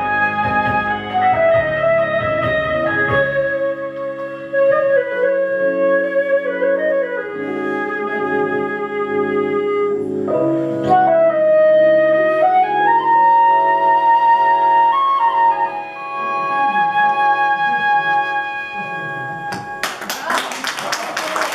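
Concert flute playing a slow melody of long held notes that step down and back up, over low sustained chords in the accompaniment.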